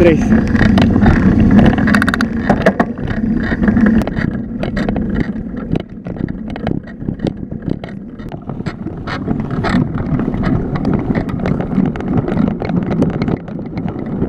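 Wind buffeting a handlebar camera's microphone and road rumble from a bicycle descending fast, with frequent small knocks and rattles; a motorcycle's engine runs close alongside in the first few seconds, with indistinct voices over it.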